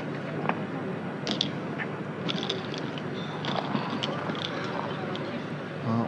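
Low background murmur of voices with a few faint scattered clicks, no close speech.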